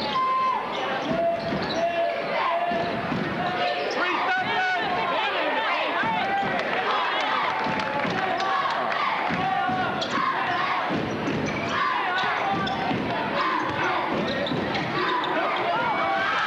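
Live sound of a high school basketball game in a gym: a basketball being dribbled on the hardwood floor, many short high squeaks, and the voices of players and the crowd.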